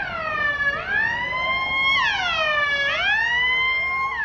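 Electronic siren of a fire-and-rescue van wailing loudly, its pitch sweeping down and back up about every two seconds.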